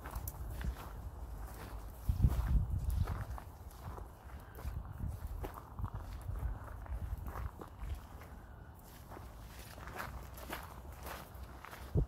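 Footsteps on a gravel path at a regular walking pace, with a low rumble swelling about two seconds in.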